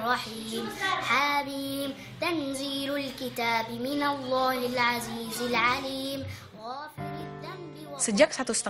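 A boy reciting the Quran aloud in a chanted melody, holding long notes and bending them in ornamented runs. About a second before the end the chant breaks off and a lower, steady held tone takes over.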